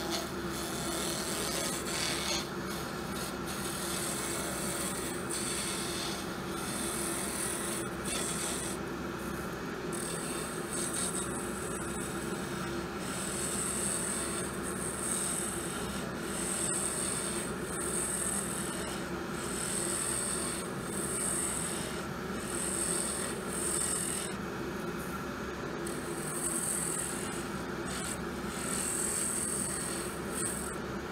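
Wood lathe running with a steady motor hum while a turning tool cuts a wooden slimline pen blank spinning between centers. The cut comes as repeated hissing passes, each about a second long, with a short break partway through.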